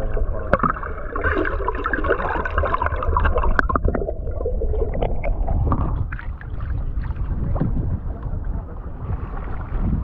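Water sloshing and splashing around a kayak-mounted action camera held at the waterline as the kayak is paddled, over a steady low rumble, with a few sharp knocks.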